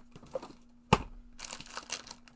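Hands rummaging through craft supplies while hunting for a missing marker: a sharp clack about a second in, then rustling and crinkling.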